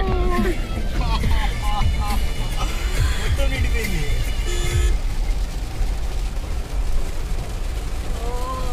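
Low rumble heard inside a car's cabin as it drives through a flooded street in heavy rain, with indistinct voices over it.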